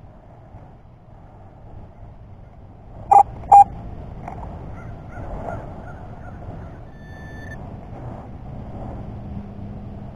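A crow gives two short, loud caws in quick succession about three seconds in. A brief thin beep sounds near the end over a faint outdoor background.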